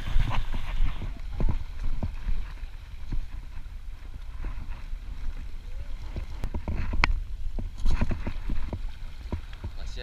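Sea water washing against a rocky shore with a low wind rumble on the microphone, and scattered knocks and clicks of stones, a sharp one about seven seconds in and a cluster about a second later.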